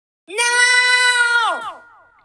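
A single held musical note, bright and rich in overtones, that sags downward in pitch after about a second, leaving falling echoes that die away.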